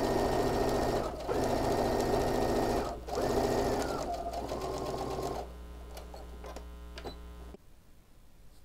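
Brother sewing machine stitching a straight seam in three short runs with brief pauses, the last run slower and lower in pitch, ending in a back stitch to lock the seam. It stops about five and a half seconds in, leaving a quieter steady hum.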